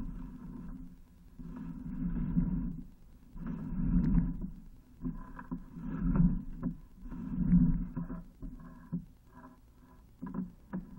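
Sewer inspection camera's push cable being fed by hand into the line, making a rubbing noise in about four separate strokes, each roughly a second long.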